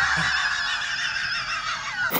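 A man laughing loudly in one long, shrill, unbroken peal that wavers in pitch.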